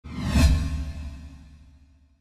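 End-card whoosh sound effect with a deep boom, swelling in the first half second and then fading away over about two seconds.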